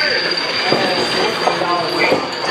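A steady, high-pitched electronic tone from an arcade game machine, held for about two and a half seconds over the busy din of an arcade.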